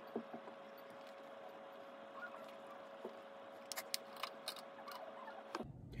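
Quiet room tone with a steady faint hum, and a few soft clicks and taps, most of them a little after the middle, from handling a face-powder compact and puff.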